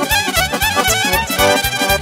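Live Romanian lăutărească party music from a wedding band: a fast instrumental dance tune, with a high melody line over a quick, steady keyboard bass beat.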